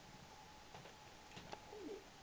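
A German Shepherd puppy gives a short, faint, low whimper near the end that dips and rises in pitch, with a few light clicks before it.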